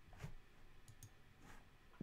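Near silence with two faint computer mouse clicks, one early and one about one and a half seconds in.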